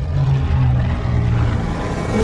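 Spitfire fighters' piston engines droning as a formation flies past, the pitch sliding slowly down as they go by, over a deep rumble.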